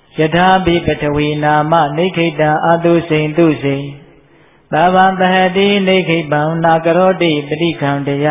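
A Buddhist monk's voice chanting in a level, held tone, in two long phrases with a short pause about four seconds in.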